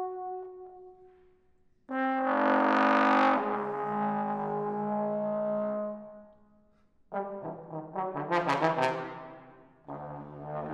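Solo trombone: a held note fades away, then about two seconds in a loud, bright note enters and steps down in pitch before fading. Near the end a second loud entry of quickly pulsing notes swells and dies away.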